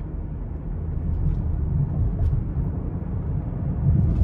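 Steady low rumble of engine and road noise inside the cabin of a 2023 Lincoln Aviator Black Label with its 3.0-litre twin-turbo V6, cruising on a paved road.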